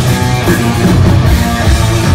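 Death metal band playing live and loud: heavily distorted electric guitars and bass over a full drum kit.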